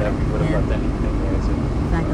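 Voices talking inside a car over a steady low rumble of storm wind buffeting the car.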